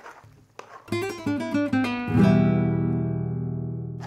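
Short acoustic guitar music cue: a quick run of plucked notes, then a strummed chord about two seconds in that rings out and slowly fades.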